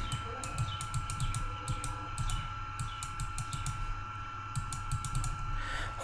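Irregular, rapid clicking of a computer mouse, several clicks a second, over a faint steady high-pitched whine.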